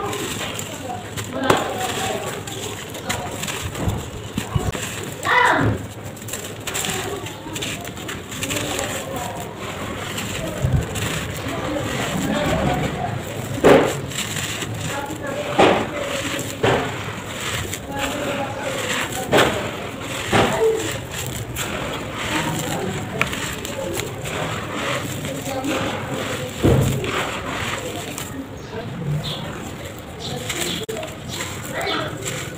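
Dry sand-cement clumps crushed and crumbled by hand: gritty crunching and sand pouring between the fingers, with a louder, sharp crunch every few seconds as a clump breaks.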